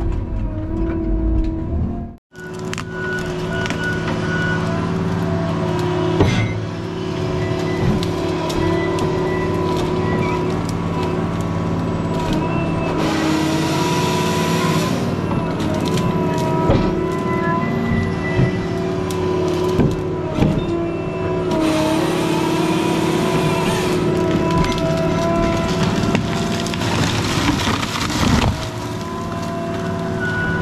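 Tracked feller buncher's diesel engine running steadily under load with a hydraulic whine, heard from the operator's cab. Twice, around the middle and again about two-thirds through, a louder rushing noise rises over it for a few seconds. The sound drops out for an instant about two seconds in.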